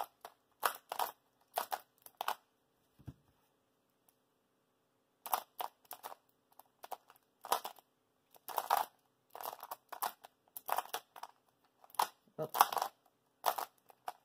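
A Cyclone Boys magnetic skewb being turned rapidly in a solve: bursts of short plastic clacks, with a pause of about three seconds a couple of seconds in, over a faint steady hum. The puzzle is loosely tensioned straight out of the box.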